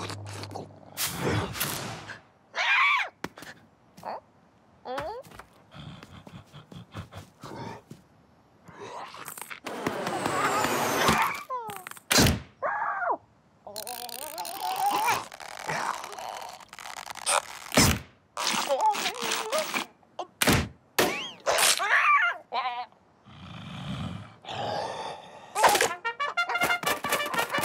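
Cartoon sound effects in a string of separate short sounds: a character's wordless grunts and groans, broken by several sharp knocks and thunks.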